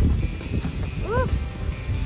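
Wind buffeting the microphone: an uneven low rumble that swells and dips, with a woman's short "woo" about a second in.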